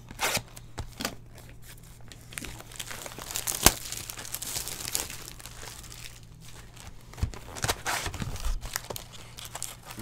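A cardboard box of trading-card packs being torn open by hand: irregular crinkling and tearing, with one sharp snap about three and a half seconds in.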